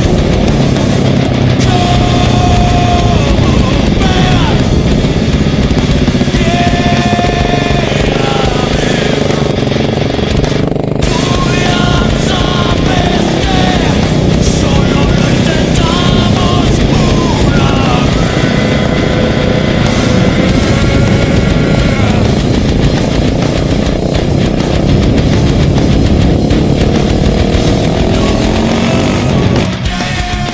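Music soundtrack mixed with the single-cylinder engine of a KTM 690 Enduro R running and revving up and down as the bike is ridden.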